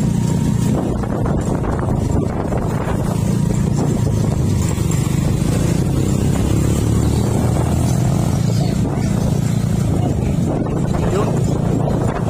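Motorcycle engines running steadily while riding along a road, with road noise: the engine drone holds an even pitch and level throughout.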